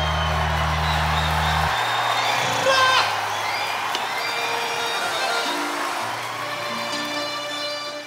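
The band's final chord held and ringing out, its deep bass note cutting off about two seconds in, over a large crowd cheering and applauding. A rising whoop comes from the crowd near the middle, and the whole sound begins to fade near the end.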